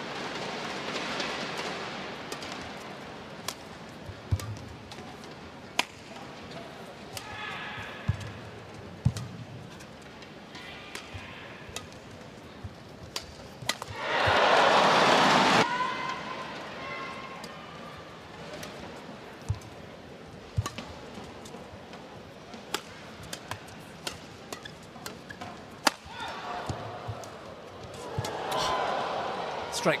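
Badminton rallies: the shuttlecock is struck by rackets in sharp, irregular cracks. The crowd in the arena cheers loudly for about a second and a half midway through, and more softly near the end.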